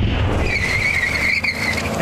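Sound effect of a vehicle's tyres screeching over a low rumble: a wavering high squeal that sets in about half a second in and stops near the end.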